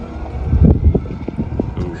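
Wind buffeting the microphone: a low, uneven rumble in gusts, strongest between about half a second and a second in.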